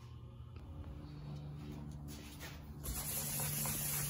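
A steady low hum, then from about three seconds in, the wet rubbing scrub of hand wet sanding: sandpaper on a pad worked back and forth over glazing putty on the fiberglass underside of a 1976 Corvette hood.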